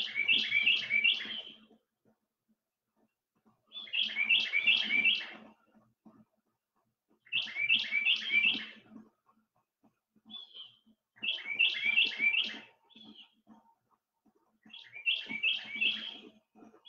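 A bird singing: a short phrase of four quick high notes, repeated about every three and a half seconds, with a few single notes between phrases.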